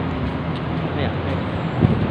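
Steady street traffic noise from a roadway, with a man saying a word or two about a second in.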